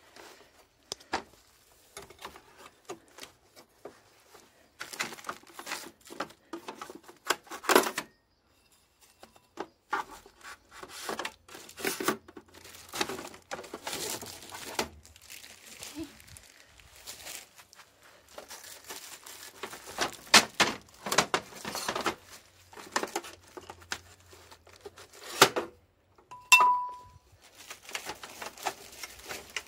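Clear plastic protective film on a folding aluminium picnic table being handled, pulled and crinkled, in irregular bursts of rustling with a short pause about eight seconds in.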